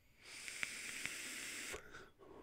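Air hissing steadily through a Reload 26 RTA rebuildable tank atomizer as a long drag is pulled on its 0.11-ohm coil build, with a few faint ticks. The hiss cuts off suddenly after about a second and a half.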